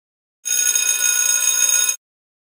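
A bright electronic ringing tone, many high pitches held steady, starting about half a second in and cutting off sharply after about a second and a half: a timer signal marking the end of an exercise interval.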